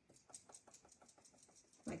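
Faint rapid tapping, about eight light ticks a second, while drops of ink are spattered onto paper.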